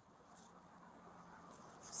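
Faint background noise with no distinct event, apart from a soft brief sound about half a second in and a faint low steady hum.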